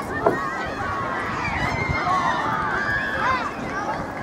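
Several high-pitched voices shouting and calling over one another, with no clear words, over a low rumble of outdoor noise on the microphone.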